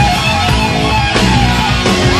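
Live heavy-metal band playing an instrumental passage: electric guitar playing lead over drums, with no vocals.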